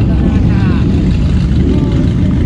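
A steady low rumble of vintage motorcycle engines running in the lot, with faint voices nearby.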